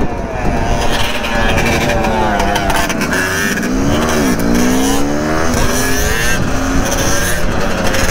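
Dirt bike and ATV engines revving on the move, with heavy wind noise on the microphone; the engine pitch dips about four seconds in, then climbs again as the throttle comes back on.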